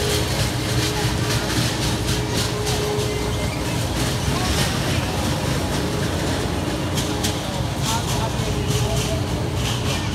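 Carnival ride ambience: a steady low mechanical hum with scattered clicks and clatter, and people's voices mixed in.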